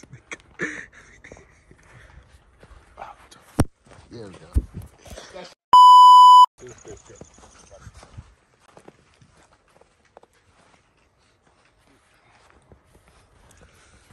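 A single censor bleep: a steady 1 kHz tone lasting under a second, about six seconds in, far louder than anything else. Around it are faint voices, a sharp click and a low knock.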